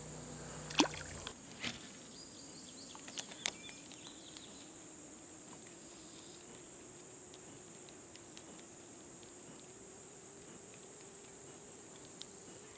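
Steady, faint high-pitched insect chorus, crickets, with a few soft clicks in the first four seconds.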